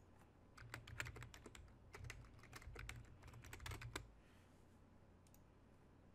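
Faint typing on a computer keyboard: a quick run of keystrokes from just under a second in until about four seconds in, then it stops.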